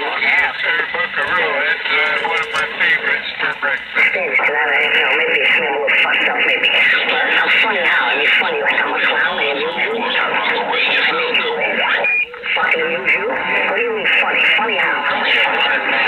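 CB radio on 27.385 MHz lower sideband receiving skip: distant stations' voices coming through the speaker, thin and band-limited, several talking over one another so the speech is garbled, with a brief drop-out about twelve seconds in.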